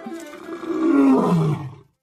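A lion roaring: one long, low call that swells about half a second in, falls in pitch and stops shortly before the end.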